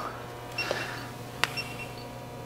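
A low, steady room hum with faint movement noise and a single sharp click about one and a half seconds in, as the metal calibration frame is handled.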